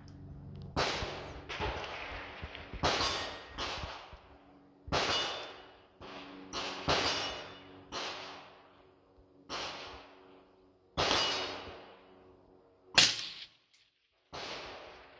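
Rifle shots on a range, about eleven spaced unevenly, each trailing off in echo, the loudest near the end: the shooter's DMR firing at a 300-yard target mixed with other shooters' gunfire. A faint steady hum runs underneath.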